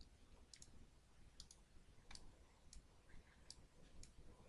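Faint computer mouse clicks, about five spread over a few seconds, the first two each a quick double click, over near-silent room tone.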